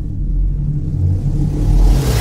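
Deep, rumbling bass drone of an animated intro's soundtrack, swelling louder toward the end as it builds to a hit.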